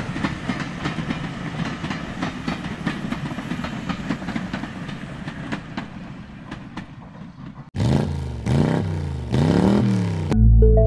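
ScotRail diesel multiple-unit train passing, its wheels clattering over the rail joints in quick clicks that fade away as it moves off. Near the end a different engine-like sound comes in suddenly, its pitch rising and falling a few times.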